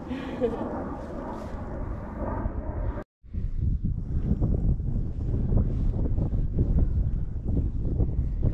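Wind buffeting the microphone, a low rumbling noise with irregular gusty knocks. It cuts out for an instant about three seconds in, then comes back a little louder.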